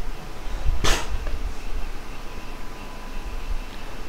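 A single short, sharp breath sound from the man about a second in, over a steady low room rumble.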